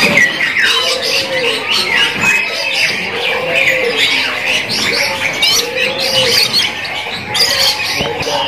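Many caged songbirds chirping and trilling at once in a dense, continuous chorus, with a lower arched call repeating every second or two beneath it.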